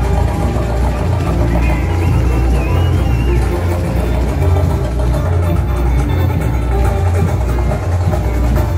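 Loud samba parade music: the samba-enredo with the school's percussion section, over a heavy, pulsing bass beat.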